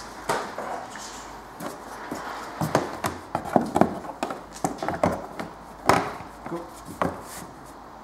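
Plastic engine cover being set over a 2.0 HDI diesel engine and pressed down onto its mounts: a string of irregular knocks and clicks, the loudest about six seconds in.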